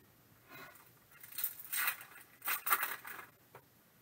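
Trading cards sliding against one another as a stack is flipped through by hand: several short scraping swishes.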